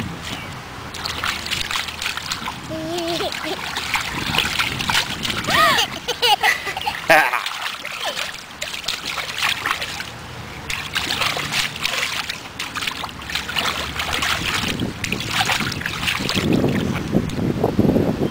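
Hands slapping and splashing the shallow water of a small inflatable wading pool, with a baby's short squeals and babbling a few seconds in.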